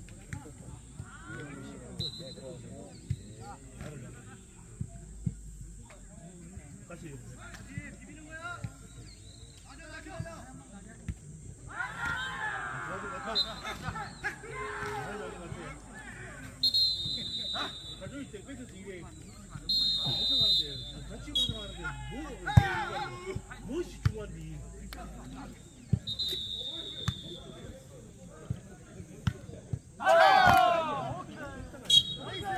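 Jokgu match play: the ball being kicked and bouncing on the court in sharp thuds, with players calling out to each other. Several short, high whistle blasts come through at intervals.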